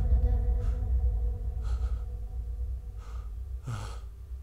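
A man crying, taking four gasping breaths about a second apart, the last one near the end the loudest, over held background music chords that slowly fade.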